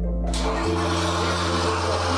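An AC miniature circuit breaker under 540 V DC arcing in an overcurrent test: a steady hiss of noise starts about a third of a second in and lasts nearly two seconds as the breaker burns and smokes, unable to quench the DC arc cleanly. Background piano music plays underneath.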